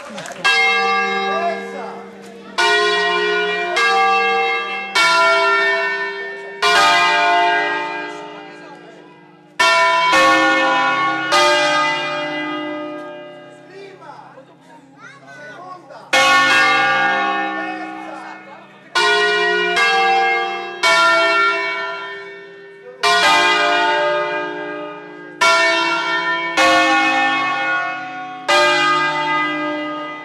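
Five-bell ring cast by Angelo Ottolina of Bergamo in 1950, tuned to a flat D-flat, rung by hand with ropes and wheels in concert style. The bells swing full circle and strike singly, about fifteen strokes in an irregular pattern with a pause near the middle, each note ringing out and dying away.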